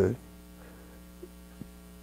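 Steady low electrical mains hum in a pause between spoken words, with two faint ticks in the second half.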